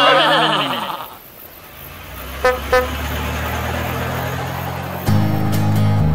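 A wavering voice trails off in the first second. A low vehicle-engine rumble then builds, with two quick horn toots about two and a half seconds in. Upbeat backing music for the song kicks in about five seconds in.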